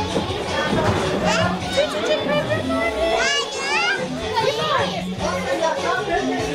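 Chatter of women and children's voices over background music with steady low notes, a child's high voice rising sharply a few times around the middle.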